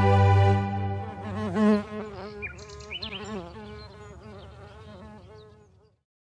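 A held music chord fades out under a buzzing bee sound effect. The buzz wavers up and down in pitch, is loudest a little under two seconds in, then dies away with the music near the end.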